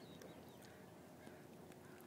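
Near silence: faint background hiss with a few soft ticks.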